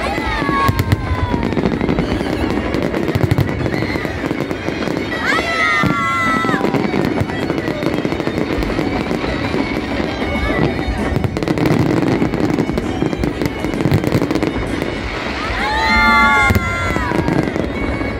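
Fireworks display: a dense, continuous run of aerial shells bursting in rapid bangs and crackles over a steady rumble. Twice, once about five seconds in and again near the end, a cluster of high gliding tones rises over the bangs.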